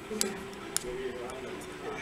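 A few light metallic clicks of steel tweezers working against a brass padlock cylinder while its driver pins are taken out of the pin chambers.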